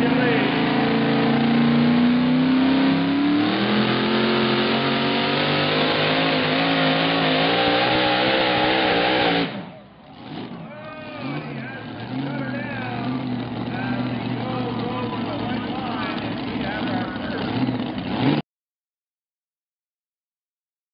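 Modified pulling tractor's engine running at full power under load as it drags the weight sled, its pitch climbing steadily over about nine seconds, then dropping away suddenly. After that comes a quieter mix of engine sound and voices, which stops abruptly a little before the end.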